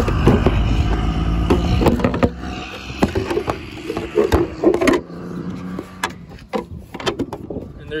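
Plastic tail light housing being pushed and worked into its mounting holes on the car body: knocks and clicks of plastic against the panel, thickest a few seconds in, over a low rumble of handling noise on the phone's microphone at the start.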